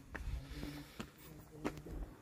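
Three faint footsteps on concrete, at walking pace, over a faint low hum.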